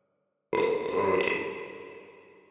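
A single loud belch starting about half a second in, with an echoing tail that fades slowly away, the burp of the wine-drunk Cyclops inside his cave.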